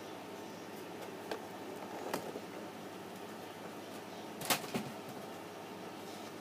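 Low steady hiss from a TV/VCR combo playing the blank lead-in of a VHS tape, with a few faint clicks, the sharpest about four and a half seconds in.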